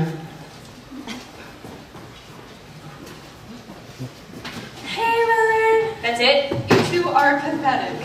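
A few seconds of faint stage noises, then from about five seconds in a high voice sings long held notes, each about a second. A single sharp knock sounds near the seven-second mark.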